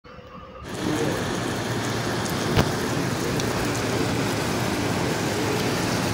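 Heavy rain falling on wet pavement, a steady hiss that fades in over the first second. A single sharp tap comes about two and a half seconds in.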